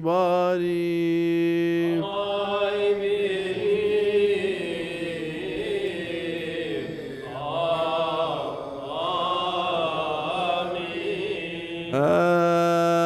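Coptic liturgical chant sung without words that the recogniser could catch: a long held note for the first two seconds, then slow, wavering melismatic lines that sound like several voices together.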